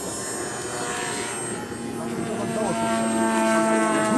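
Radio-controlled model aeroplane engine running in flight, a steady drone. About halfway through a stronger, lower engine note comes in and the sound grows louder.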